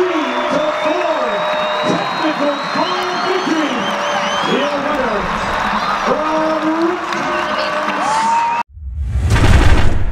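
A stadium crowd cheering and shouting, many voices at once, as a college wrestling bout ends in a technical fall. Near the end the sound cuts out abruptly and an outro logo sting swells up, loudest in its deep low end.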